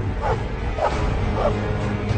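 A dog yelping three times in quick succession, each short call falling in pitch, over background music.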